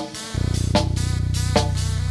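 Live band music: a short hit at the start, then a low, steady buzzing drone comes in about a third of a second in, with short accented notes struck over it about every 0.8 s.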